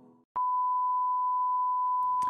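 A steady, pure 1 kHz test tone, the reference tone that goes with TV colour bars. It starts with a click about a third of a second in and holds unbroken.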